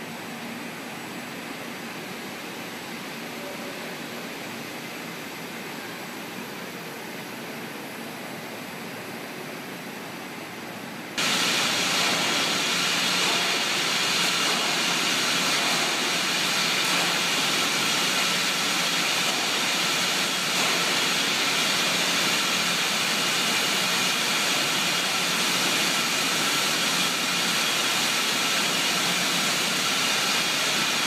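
Steady machinery hum and hiss in a brewhouse. About eleven seconds in it gives way abruptly to the much louder, steady noise of a beer bottling line's conveyors and packaging machines running.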